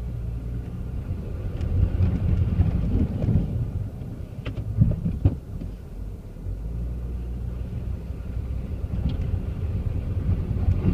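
2006 Saab 9-3's 2.0-litre four-cylinder engine running as the car is driven slowly over rough ground, a low rumble that swells and eases. A few short knocks are heard, mostly around the middle.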